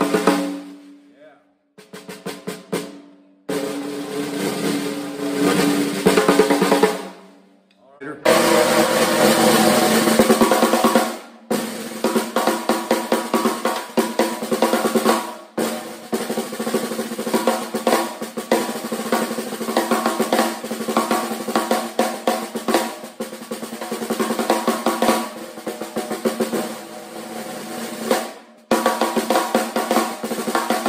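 Snare drums with Remo Emperor X heads and wide snare wires, played close up with sticks: rolls and accented strokes. For roughly the first eight seconds it is the Pearl 8x14 wood-shell snare. After a brief pause it is the Ludwig 5x14 Acrolite aluminium snare, played in dense rolls and strokes.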